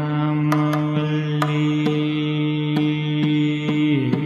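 Carnatic classical concert: a male voice holds one long steady note over the accompaniment, breaking off right at the end, while the mridangam plays even strokes about twice a second.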